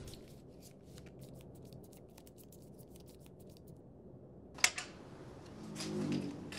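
A deck of playing cards being shuffled by hand: a quick run of soft, even clicks for about three and a half seconds, then a single sharp tap on the table about four and a half seconds in.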